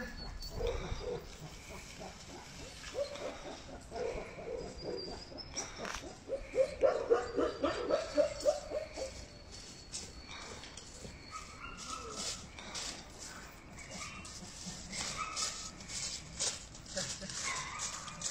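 Tibetan mastiffs barking: a few single barks, then a quick run of deep barks about six seconds in, the loudest part. Short crackles follow in the second half.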